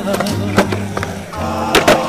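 Skateboard wheels rolling on concrete with sharp clacks of the board, including two loud hits in quick succession near the end, under a song with singing.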